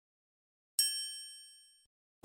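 A single bright, high-pitched ding sound effect, struck about a second in and fading out within about three-quarters of a second.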